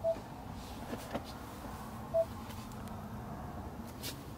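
Two short electronic beeps about two seconds apart from a Ford F-150 Lightning's centre touchscreen, acknowledging presses on the climate controls, over a faint steady cabin hum with a couple of light ticks between them.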